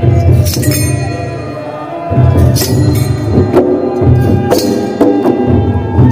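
Traditional Bodo ritual music: kham long barrel drums beating a steady rhythm, with a ringing metallic clash about once a second and sustained ringing tones above it.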